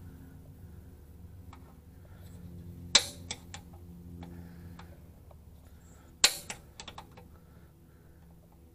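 Spring-loaded automatic center punch snapping against the sheet steel of the frame rail, marking spot welds for drilling: two sharp clicks about three seconds apart, each followed by a few lighter ticks.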